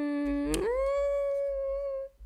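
A woman humming a long held "mm" that slides up about an octave about half a second in and holds the higher note, a thoughtful "mm-hmm".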